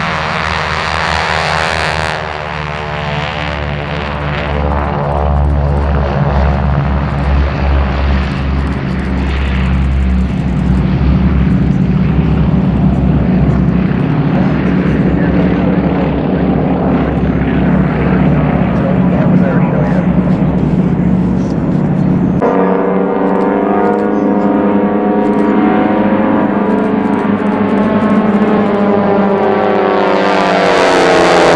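Four North American T-6 Texans' Pratt & Whitney R-1340 radial engines at takeoff power, a loud steady propeller drone as the formation rolls and climbs. The engine tones shift about two-thirds of the way through and slide in pitch near the end as the planes pass overhead.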